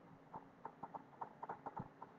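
Faint, irregular clicking of a computer mouse being worked, with short ticks coming a few to several per second.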